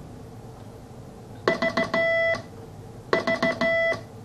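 Morse code keyed on a homebrew QRP CW transceiver, heard as its steady beat note: a few short dits and then a long dah, sent twice, each element starting and stopping cleanly.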